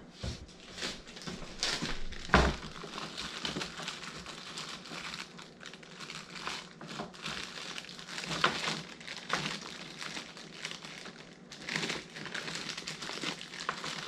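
Plastic packaging crinkling as a bundle of small food-colouring bottles is handled and unwrapped, with one sharp knock about two seconds in.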